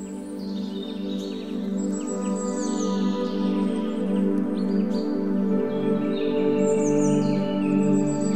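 Calm ambient background music of sustained chords that swell slowly, a lower bass note coming in a little past halfway, with bird chirps heard above it.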